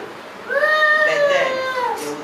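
A woman's voice through a microphone in one long, high-pitched, drawn-out wail that starts about half a second in and falls in pitch at the end.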